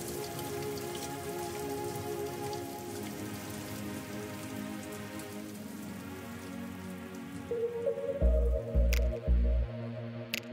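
Steady rain sound under soft, sustained music chords. About eight seconds in the rain thins out and a beat with deep bass thumps about twice a second comes in, with a few sharp clicks.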